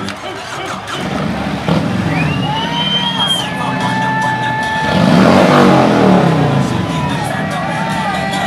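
A V-twin touring motorcycle engine starts up about a second and a half in and runs, then is revved hard once around five seconds in. Background music with singing continues underneath.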